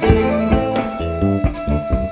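Ethiopian band playing instrumental music: plucked krar lyre lines with masenqo fiddle over a steady rhythm of hand-drum strokes.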